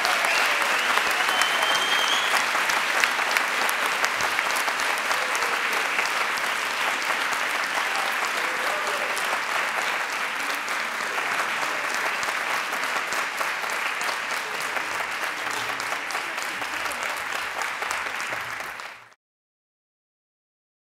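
Audience applauding, a dense steady patter of many hands clapping that cuts off suddenly near the end.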